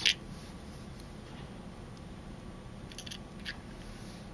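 Quiet room hum with a few faint, sharp little clicks about three seconds in and again half a second later, from a pliable steel slice anchor being handled and pressed into a clear plastic recording chamber.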